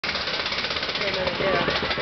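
A Wild Mouse–style coaster car climbing its chain lift hill, with a rapid, even clatter from the lift chain and the anti-rollback ratchet.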